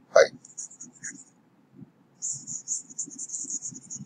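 A stylus scrubbing rapidly on a graphics tablet while erasing, a faint, quick, high-pitched scratching that starts about two seconds in and keeps up to the end.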